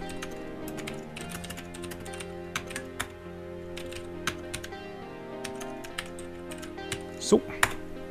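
Computer keyboard typing: irregular keystroke clicks, several a second, while code is entered. Soft background music with sustained tones plays underneath.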